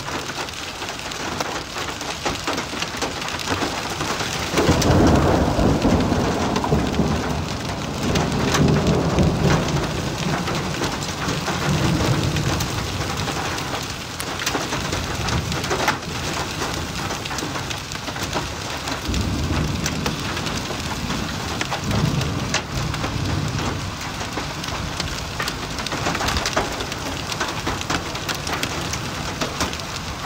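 Heavy rain mixed with small hail pelting a road in a steady dense hiss, with scattered sharp ticks. Deep low rumbles swell about five seconds in and again around twenty seconds in.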